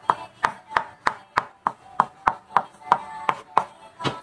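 Kitchen knife chopping mango on a wooden cutting board: about a dozen quick, even knocks of the blade on the wood, roughly three a second.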